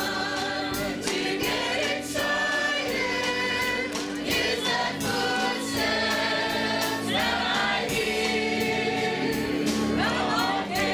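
Church choir of mixed men's and women's voices singing a gospel song together, with accompaniment underneath.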